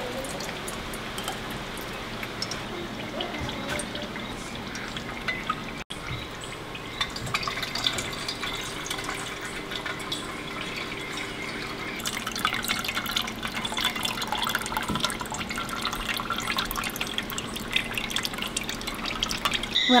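Hot rendered beef tallow dripping and trickling through a small wire-mesh strainer into a stainless steel bowl, with many light clicks of a metal measuring cup against the strainer and bowl, more of them in the second half.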